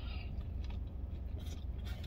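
A person biting into a chicken sandwich and chewing it, with a few faint soft clicks from the mouth and food, over a steady low hum.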